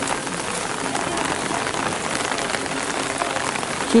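Steady rain falling, a dense spatter of small drop hits on wet stone paving and umbrellas.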